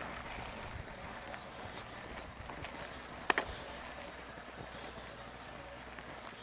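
A mountain bike rattling over a bumpy grass trail: irregular knocks and clatters, several in the first second and a few sharp ones around two and three seconds in, over a steady hiss.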